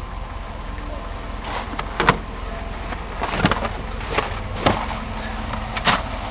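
About five short, sharp knocks and clunks, spread out from about two seconds in to near the end, over a steady low hum.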